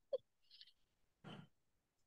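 Near silence, broken by two very short, faint vocal sounds right at the start and one brief breathy exhale, like a soft sigh or a breath of laughter, a little past the middle.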